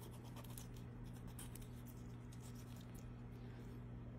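Faint scraping and slicing of a kitchen knife cutting rabbit meat off the carcass on a plastic cutting board, in many short scratchy strokes, over a steady low hum.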